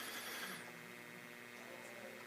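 Faint room tone with a low steady hum, and a soft brief rustle in the first half second.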